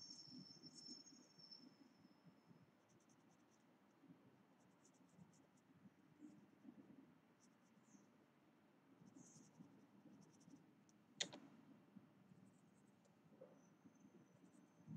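Faint scratching of a graphite pencil on paper as it shades in small strokes, with one sharp click about eleven seconds in.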